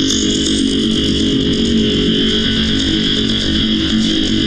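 Electronic industrial noise music: a dense, steady feedback drone run through an analog amplifier-simulation plugin, with a bright high band over a low buzz, holding level with no beat or break.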